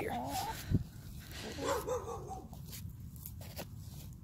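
Domestic hens close by making soft, wavering clucking calls, a few times in the first two seconds, with a single dull thump about 0.7 s in as the soil is dug.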